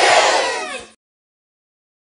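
A group of voices shouting and cheering, fading out and cutting to dead silence about a second in.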